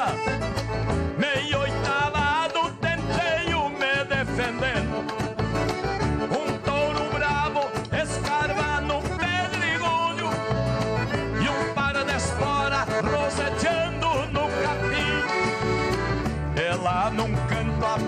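Live gaúcho folk band playing an instrumental passage led by two accordions, with acoustic guitars, bass guitar and a large drum keeping a steady beat.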